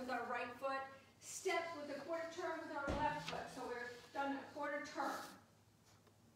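A woman's voice speaking in short phrases, in the manner of a line dance instructor calling steps, with a single low thump about three seconds in.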